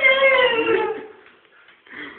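A man letting out a loud, drawn-out, high-pitched howl that sinks slightly in pitch and fades out after about a second.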